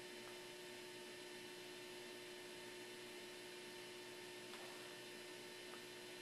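Faint, steady electrical hum with a thin, constant tone over a low hiss.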